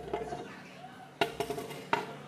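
Two sharp knocks, a little past a second in and again near the end, over faint background music.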